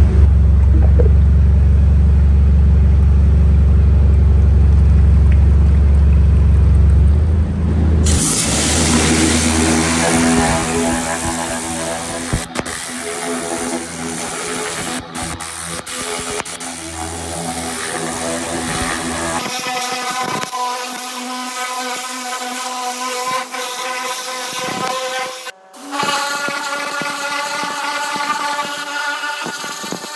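A steady low hum for the first eight seconds, then a pressure washer jetting water onto a bare cast-iron V8 engine block: a loud hiss of spray over the machine's steady pitched running tone.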